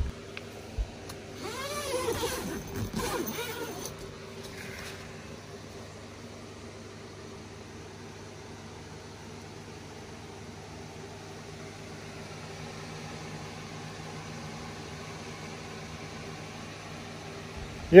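A small electric box fan runs with a steady low motor hum. A brief, louder wavering sound rises and falls in the first few seconds.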